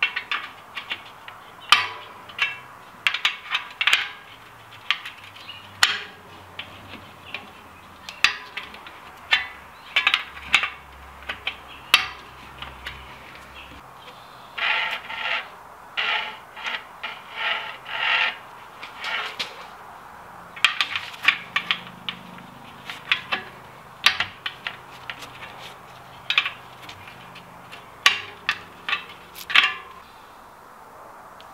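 A bicycle wheel being trued in a truing stand: a spoke key turning the spoke nipples and the wheel being spun give a run of irregular, sharp metallic clicks and taps. A low hum comes and goes.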